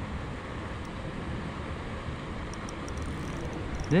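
Steady low outdoor background noise with no distinct sound events.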